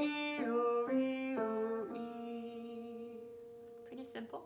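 A woman singing the 'E-O' vocal warm-up, alternating a bright 'ee' and a darker 'oh' on notes that step up and down about twice a second. About halfway through she settles on one long note that slowly fades.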